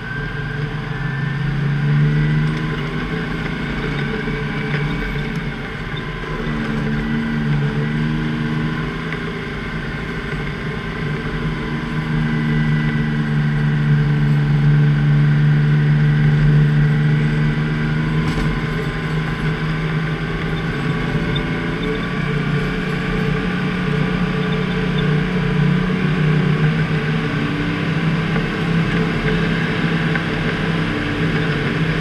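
Plow truck's Detroit Diesel engine running under load, its pitch rising and falling as the driver works the throttle, loudest about halfway through.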